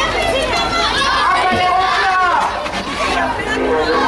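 A crowd of children's voices, many kids talking and calling out over one another at once.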